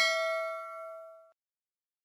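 A bell-like 'ding' sound effect, the notification-bell chime of an animated subscribe-button overlay. It is struck once and rings out with a few clear tones, fading away over about a second and a half.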